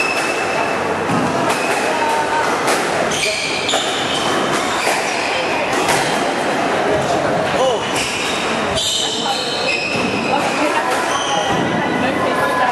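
Squash rally: a squash ball knocking off rackets and the court walls every second or so, with short squeaks of sneakers on the wooden court floor, over the steady chatter of a busy hall.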